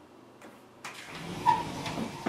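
A single sharp click from a laptop touchpad button about halfway through, amid rustling handling noise that starts about a second in.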